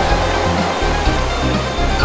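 Background music: a dense instrumental track over a bass line that shifts note about every half second.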